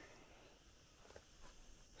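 Near silence: faint outdoor room tone with a few soft ticks in the second half.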